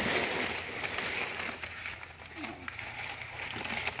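Crumpled brown kraft packing paper rustling and crinkling as it is lifted out of a cardboard box, loudest in the first second or so.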